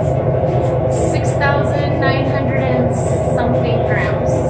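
Steady low drone of an overhead exhaust hood fan running, with some brief murmured speech over it.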